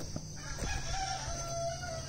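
A rooster crowing faintly, one long held call starting about half a second in, over steady insect chirring.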